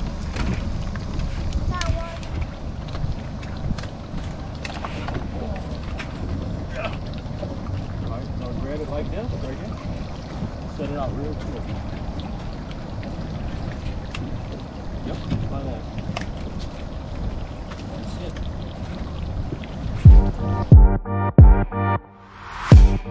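Steady low rumble of wind on the microphone, with faint voices now and then. About two seconds before the end, electronic music with heavy bass beats cuts in loudly.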